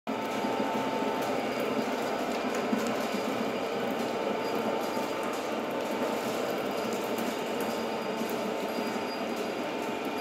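Electric stone chekku oil mill running steadily: its motor-driven pestle grinds groundnuts in a stone mortar, an even mechanical rumble with a faint steady whine.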